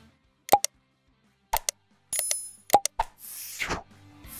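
Sound effects of an animated subscribe graphic: a series of quick pops and clicks, a short bright chime a little past the middle, then a falling whoosh near the end.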